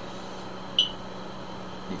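A steady low hum over room noise, with one brief high-pitched chirp a little under a second in.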